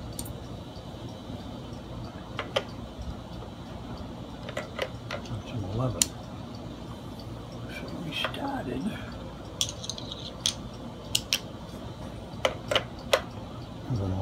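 Scattered sharp metal clicks and clinks of small tools and hardware being handled while an electric guitar is being taken apart, irregular and a second or more apart, with a quick cluster in the last few seconds.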